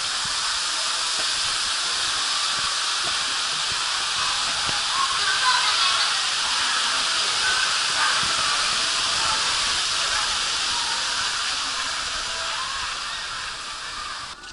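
Steady rush of water pouring down in a curtain from an overhead structure into a pool. It starts suddenly and fades away near the end.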